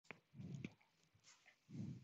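Near silence: faint room tone on a desk microphone, with two soft, brief low sounds about half a second in and just before the end.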